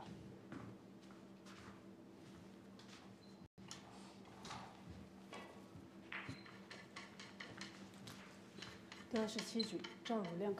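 Faint, scattered clicks and knocks in a quiet pool hall over a low steady hum, with a voice coming in briefly about nine seconds in.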